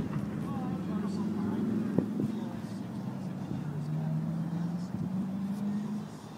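A car engine running at low, steady revs, its hum dropping in pitch around the middle and rising again near the end, with faint voices in the background.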